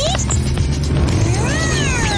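A cat meowing, one long call that rises and then falls in pitch near the end, over background music.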